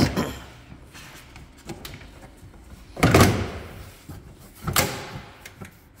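Plastic trim and liner panels in a Tesla Model 3's front trunk being handled and pressed into place, giving hollow knocks and thuds: a loud one about three seconds in and another just under two seconds later.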